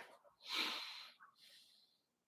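A man's short breath out through the nose, a quick snort-like huff of air lasting about half a second, followed by a fainter breath.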